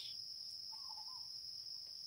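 Crickets singing a steady, unbroken high-pitched trill, with a faint, brief lower call about halfway through.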